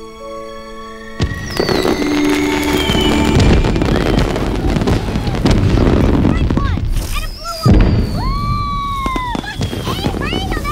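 Film score held on soft chords, then about a second in a sudden swell of crackling, sparkling sound effects with long whistling glides, some falling and some rising, over the music. Later there are arching whistle-like tones.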